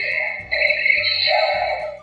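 Electronic transformation sound effect from an Ultraman Geed transformation belt toy's small speaker, set off by a hand press: a loud, high, steady electronic tone in two long stretches, the second cutting off near the end. Background music with a low pulsing beat plays underneath.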